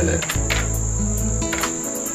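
Background film-score music: sustained low synth bass notes and held chords with a few soft percussive taps, over a steady high-pitched tone.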